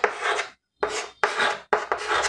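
Chalk scratching on a chalkboard while writing, in about four short strokes with a brief pause between the first and second.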